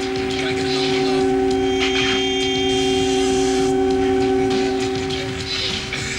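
Electronic trance music: a sustained synth chord held for about five seconds, with higher tones joining it briefly in the middle, over a steady low background.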